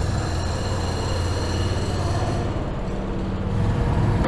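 Steady machinery drone on a tunnel repair site: a low hum with a high whine of several even tones that fades out about halfway through.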